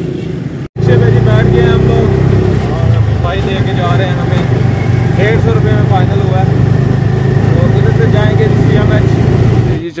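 Motorcycle rickshaw engine running loudly and steadily, heard from on board, with voices over it. The first moment, before a cut, is street traffic.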